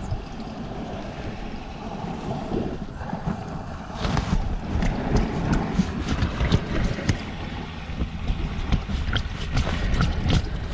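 Wind buffeting the microphone over the wash of the sea around an inflatable kayak, steady at first; from about four seconds in it grows louder, with a run of short knocks and rubbing from handling against the kayak.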